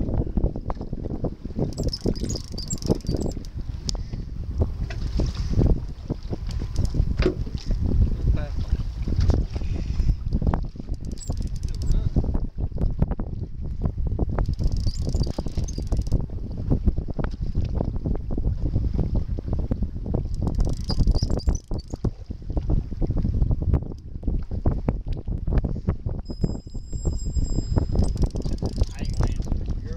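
Wind buffeting the microphone on a boat at sea, a dense low rumble full of short knocks, with boat and water noise underneath. Brief hissy bursts come every few seconds.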